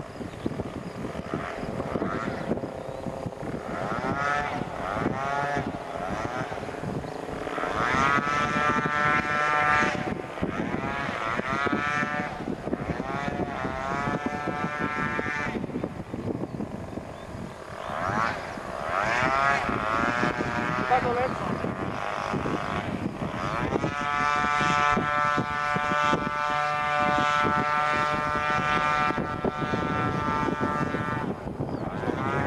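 A small aircraft engine droning, its pitch swooping up and down several times and then holding steady for the last several seconds.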